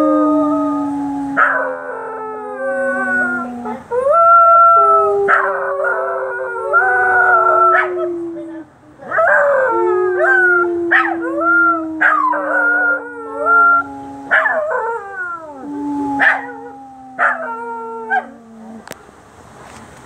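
Two Scottish terriers howling together at sirens: long, overlapping, wavering howls that break off and start again, with short yips between them. Under them runs a long, steady, slowly falling lower tone.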